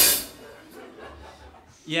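A drum-kit sting after a joke, its cymbal ringing out and dying away in the first moment, then a faint low hum until a man says "yeah" at the very end.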